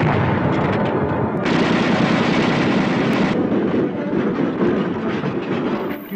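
Battle sound effects: rapid gunfire and explosions run together in a dense, continuous rumble that eases slightly near the end.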